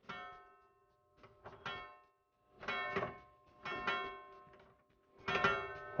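The chiming lock of an antique wooden chest ringing as it is worked: about five bell-like chimes, each fading away, a ringing signal built in to sound when the chest is opened.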